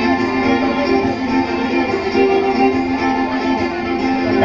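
Live band music played through a PA: a guitar-led instrumental passage of held notes, without vocals.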